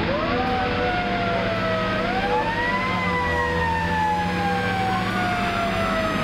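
Fire engine siren wailing, its pitch rising and falling slowly: up just after the start, down, up again to a peak about three seconds in, then a long slow fall, over a steady low engine drone.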